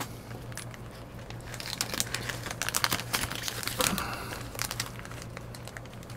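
Clear plastic zip-lock bag crinkling in the hands, in irregular crackles that are busiest in the middle.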